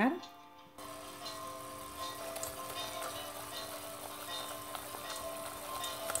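Roux of flour cooked in oil sizzling in a saucepan on the heat, a steady hiss with faint scattered pops that starts suddenly about a second in, under background music.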